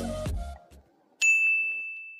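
The tail of a music track dies away, then about a second in a single high ding sounds: a bright bell-like tone that rings on and slowly fades.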